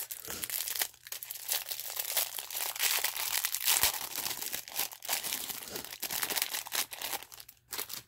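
Small clear plastic bag crinkling and crackling as fingers pull it open and handle the pieces inside, a busy rustle full of sharp crackles that stops just before the end.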